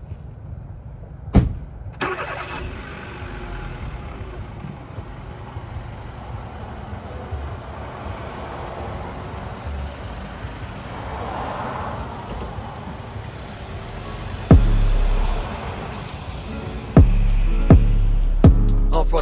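A car engine starts and runs steadily, with music under it and two loud, deep booms near the end.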